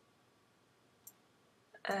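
A single computer mouse click about a second in, over faint room tone: the mouse button pressed to grab a guideline in the drawing program.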